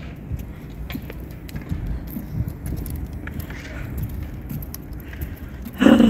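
Wind buffeting a phone microphone: an uneven low rumble with a few faint clicks.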